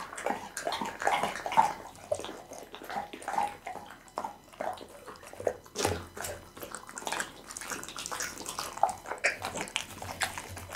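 Pit bull chewing chunks of raw cow kidney close to the microphone: a steady run of wet smacking chews in an uneven rhythm, with a few louder smacks.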